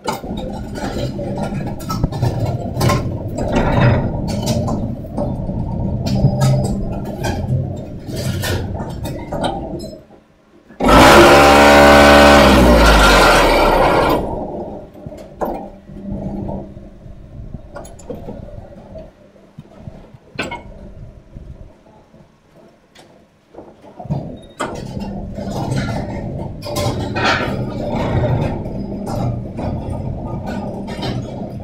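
MAC 1400 automatic concrete block machine running through a production cycle: a mechanical rumble with scattered metallic clanks and knocks. About eleven seconds in comes the loudest part, a heavy vibrating hum of about three seconds whose pitch steps down as it stops, typical of the mould vibrators compacting the concrete. After a quieter stretch of knocks the rumble returns near the end.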